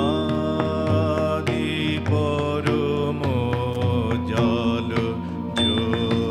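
A man singing a song into a microphone with a wavering, ornamented melody, accompanied by keyboard and tabla.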